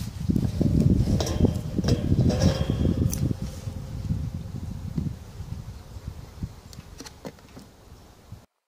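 Close handling noise from fingers working a small plastic cap: a low rumble with many small clicks and rustles, loudest in the first few seconds and fading steadily.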